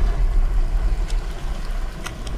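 A deep, steady low rumble under a faint hiss, the kind of drone a film trailer lays under a dark shot.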